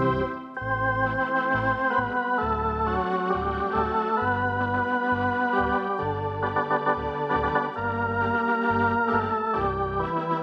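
Eminent Grand Theatre 2000 electronic theatre organ playing a medley tune: a melody on the manuals over short, detached pedal bass notes, with a brief break about half a second in.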